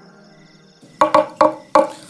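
Faint tail of a music bumper fading out, then four quick struck notes with a short ring from a wooden folk instrument held across the player's lap.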